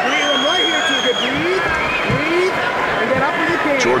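Arena crowd yelling and shouting, many voices overlapping. A long, steady, high whistle sounds over them for about the first second.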